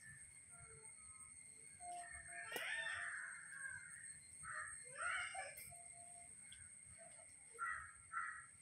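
A bird calling several times: a longer harsh call about two and a half seconds in, another about five seconds in, and two short calls close together near the end.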